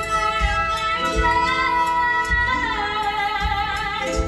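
Live stage music: a woman singing long held notes over a band with a steady bass drum beat.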